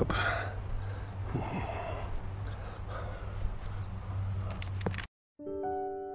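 Open-air background noise with a steady low hum for about five seconds, cut off suddenly; after a brief silence, soft background piano music begins near the end.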